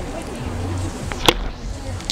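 A single sharp knock about a second in, over faint murmuring voices.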